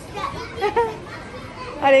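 A young child's high voice chatters briefly over store background noise. A woman starts speaking near the end.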